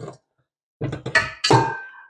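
Stainless steel stand-mixer bowl clanking against the mixer's base as it is twisted free and lifted off: a few quick knocks about a second in, followed by a short metallic ring.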